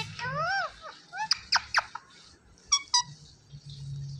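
Indian ringneck parakeets calling. There are squeaky rising-and-falling calls at the start, a quick run of sharp chirps sweeping down in pitch about a second in, and two short chirps near the three-second mark.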